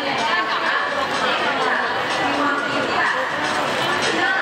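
People talking, with overlapping voices and chatter, in a large, busy indoor public space.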